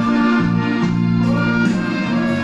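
Live band music with no singing: sustained chords, changing about every second, over acoustic guitar.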